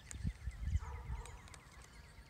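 Outdoor ambience: a bird's rapid trill of short repeated notes lasting just over a second, over low thumps and rumble that are loudest in the first second.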